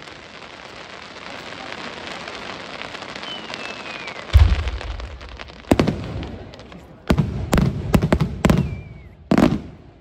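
Aerial fireworks display: a hiss that builds for about four seconds, then about seven loud booms of shells bursting in quick succession.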